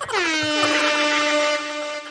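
A single horn-like tone, likely an air-horn sound effect. It dips quickly in pitch at the start, then holds one steady note for about two seconds.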